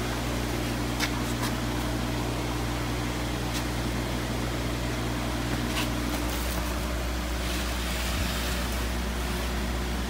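Steady hum and hiss of room machinery, with several low tones in it; one of the tones stops about six seconds in and another near eight seconds. A few light clicks and rustles come from handling a styrofoam shipping box and its plastic bag.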